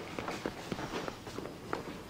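A woman's quick footsteps on a hard floor, a few steps a second.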